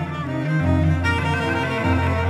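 Slow instrumental worship music with sustained bowed-string tones over a bass line that moves between long held notes.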